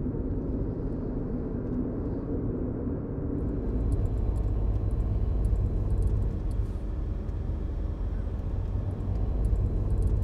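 Toyota car on the move, heard from inside the cabin: a steady low drone of engine and road noise that gets deeper and louder about three and a half seconds in.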